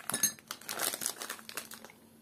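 A clear plastic bag of chia seeds crinkling as it is handled and set down, with a metal teaspoon clinking against a ceramic cup at the start.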